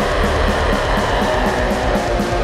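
Black metal song with the full band playing: distorted electric guitars over bass and fast, evenly driving drums, in a dense steady wall of sound.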